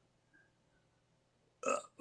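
Near silence with faint room tone, then near the end a man's short hesitation sound, 'uh', just before he goes on talking.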